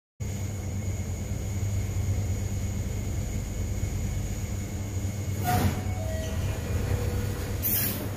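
Lift car arriving at the landing: a steady low mechanical rumble from the lift, a short knock with a brief tone about five and a half seconds in, then a brief hiss near the end as the stainless-steel landing doors slide open.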